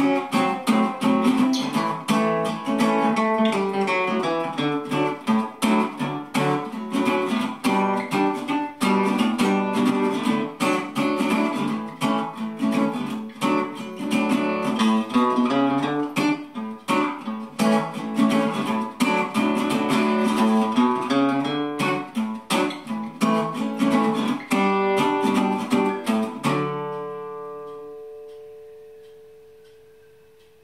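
Regal RC51 resonator guitar with a nickel-plated brass body, strung with used 13–56 phosphor bronze strings, fingerpicked in a busy stream of notes. Near the end it stops on a last chord that rings out and slowly fades.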